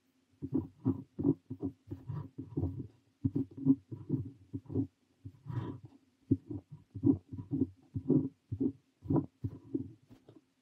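Parker 45 fountain pen nib scratching across notebook paper while writing Korean characters, a quick run of short strokes, about two a second, with brief pauses. A faint steady hum runs underneath.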